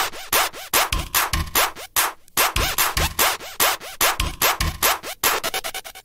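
Jumpstyle electronic dance track in its percussion-driven intro: a steady, regular kick drum under dense, rapid, noisy percussion hits with a scratchy texture and no melody yet. The beat drops out briefly twice.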